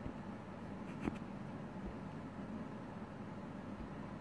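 Quiet room tone with a faint steady hum and a single soft click about a second in.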